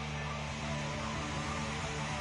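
Live hard rock band holding a loud, distorted electric guitar and bass chord that rings on steadily.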